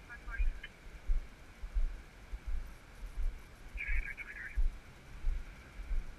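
Walking footsteps and the jostling of a body-worn camera, giving regular low thumps about one and a half times a second. About four seconds in there is a brief high-pitched burst of sound.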